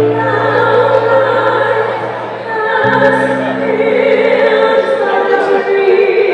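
Singers performing a song into microphones over musical accompaniment, several voices holding long notes in harmony; the low accompanying chord changes about three seconds in.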